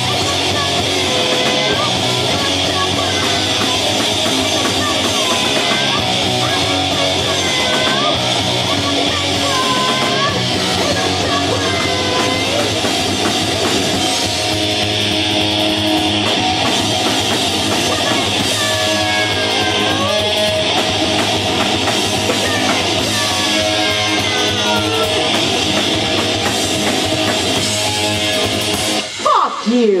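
Live rock band playing a song on electric guitar, electric bass and drum kit, loud and steady, with a brief break about a second before the end.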